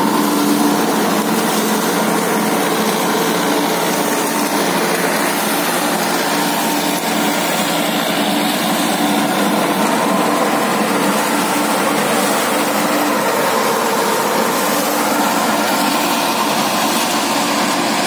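Massey Ferguson 2635 tractor running steadily under load, driving a super seeder whose rotary tiller churns maize stubble and soil as it sows wheat in the same pass.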